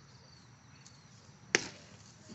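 A baseball pitch smacking into the catcher's leather mitt: one sharp, loud pop about one and a half seconds in, with a short echo after it.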